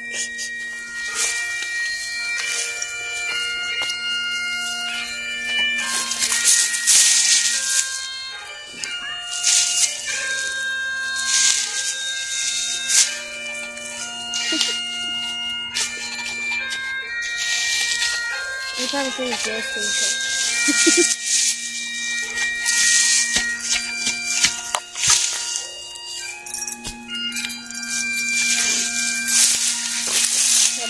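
Bagpipe music: a slow melody of long held notes over one steady drone. Scrapes and thuds of a small shovel putting dirt back into a grave are heard under it.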